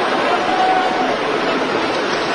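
Steady wrestling-arena crowd noise, an even wash of many voices with no single voice standing out.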